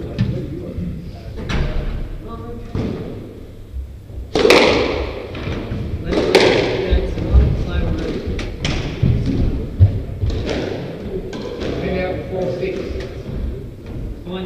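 Squash rally: the ball struck by rackets and hitting the court walls, a series of sharp knocks and thuds that echo in the court. The two loudest come about four and a half and six seconds in, followed by quicker knocks.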